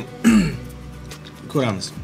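A man's voice making two short wordless sounds, each falling in pitch, about a quarter second in and again about a second and a half in, like throat clearing.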